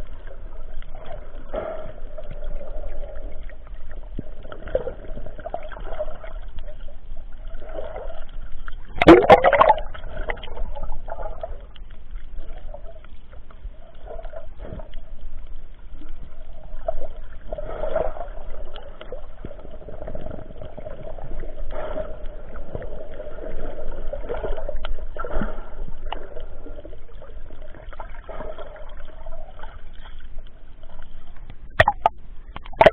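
Muffled water gurgling and bubbling around a snorkeler's camera, irregular and uneven, with one louder splash about nine seconds in.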